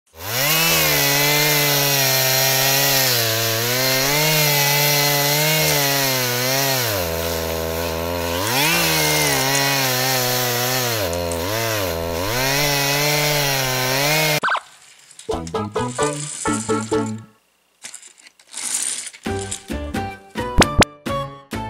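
A revving chainsaw sound effect, its pitch rising and falling slowly, for about fourteen seconds. It cuts off suddenly, and a short jingle of plucked notes and clicks follows.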